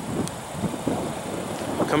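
Wind buffeting the microphone: an uneven rushing noise with no pitch to it.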